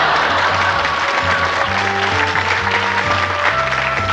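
Audience applause over backing music with a steady bass line.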